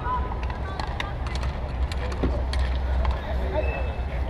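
Steady low wind rumble on the microphone of a camera moving with the play, under scattered sharp clicks and knocks from bike polo mallets, ball and bicycles on the hard court. Faint shouting of players runs in the background.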